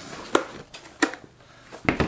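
Clear plastic tackle utility box being handled over a table: a few sharp plastic clicks and knocks, the loudest near the end as it comes down on the tabletop.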